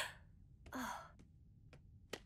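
A short breathy sigh, falling in pitch, about a second in, just after the end of a voiced laugh at the very start. Two faint clicks follow later.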